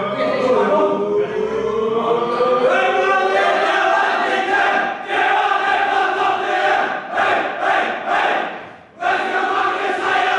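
A group of men singing and chanting together in long held notes, with a brief pause near the end before the voices come back in.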